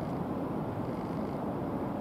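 Sea surf breaking on the shore: a steady low rumbling noise with no separate events.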